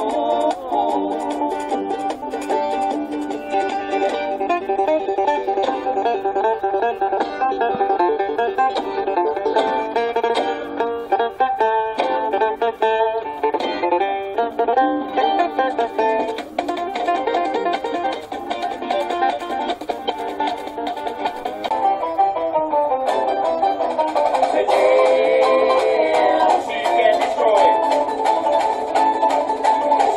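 Instrumental passage of rapidly picked notes on an acoustic plucked string instrument, in a folk or bluegrass style. The sound is thin, with almost no bass.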